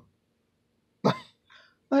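A man coughs once, briefly, about a second in, followed by a fainter short breath sound.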